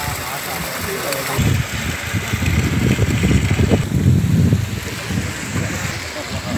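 Outdoor voices talking, with gusty wind buffeting the microphone as a rumbling noise from about a second and a half in.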